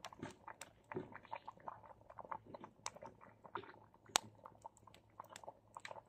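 Wood fire in an open fire pit crackling, with irregular sharp snaps and one louder pop about four seconds in.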